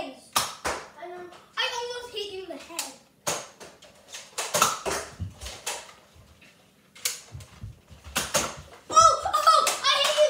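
Children shouting and squealing during a Nerf dart battle, with a scatter of sharp clicks and knocks from foam-dart blasters firing and darts striking.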